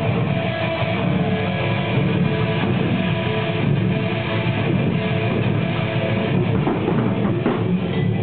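A rock band playing live in a room: amplified electric guitars over a drum kit, loud and steady.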